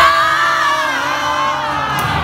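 A crowd of teenagers singing along at full voice, holding one long note together, while the music's bass drops away.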